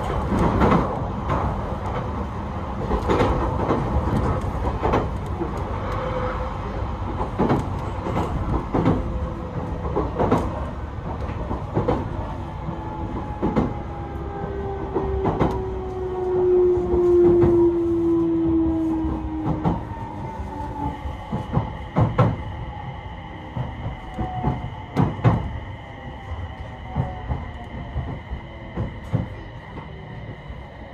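JR East E721 series electric train heard from inside the carriage, its wheels clicking over rail joints over a steady running rumble. A motor whine falls slowly in pitch and the clicks space out as the train slows, and about two-thirds of the way through a pair of steady high tones starts.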